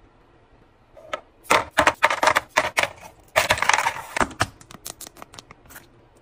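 Halloween-shaped ice cubes clinking and clattering as metal tongs drop them into a clear plastic bin. Quick clusters of knocks come from about a second and a half in to about four and a half seconds, then a few single clinks.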